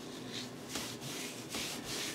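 Hands rubbing a dry salt, garlic and pepper seasoning into a raw tri-tip roast on a wooden butcher block: a few soft scrubbing strokes of grit on meat and wood.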